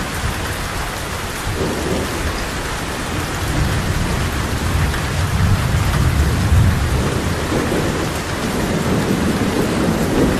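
Steady heavy rain hissing on the ground and roof, with a deep rolling rumble of thunder that swells in the middle and fades again.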